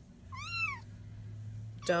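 A five-week-old Bengal kitten gives one short high meow, rising then falling in pitch, about a third of a second in. A faint low steady hum starts with it and runs on underneath.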